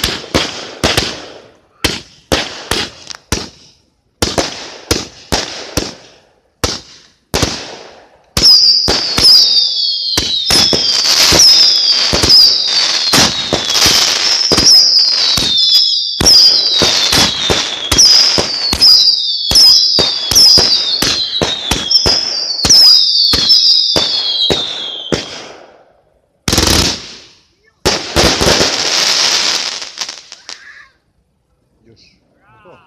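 Fireworks going off. First comes a string of separate sharp bangs. Then for about seventeen seconds a dense volley of shots fires, over which whistles shriek one after another, each falling in pitch. Near the end there is a single bang, then a short burst of crackling.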